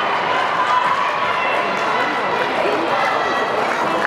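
Spectators in a large indoor track arena shouting and calling out over a steady, echoing crowd hubbub during a race.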